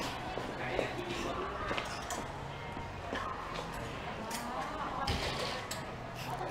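Background music with faint, indistinct voices, at a low level. Scattered light clicks and clatter run through it.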